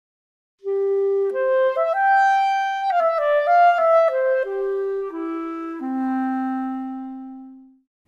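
8Dio Clarinet Virtuoso sampled clarinet, with its Clarinet 2 character setting switched on, playing a one-voice legato phrase. It starts a little under a second in, climbs to a high point and falls back, ending on a long low held note that fades away.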